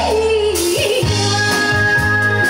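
Female enka singer with a live band of electric bass, drums and keyboards, drawing out a wavering, ornamented sung note that falls and ends about a second in while the band plays on.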